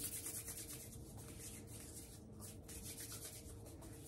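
A person's palms rubbing briskly together, giving a soft, steady dry swishing of quick back-and-forth strokes.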